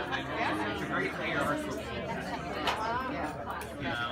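Overlapping chatter of several people in an audience talking among themselves at once, with no music playing.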